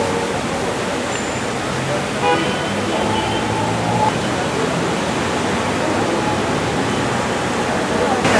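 Steady outdoor street noise, a constant hiss of traffic, with faint voices in the distance.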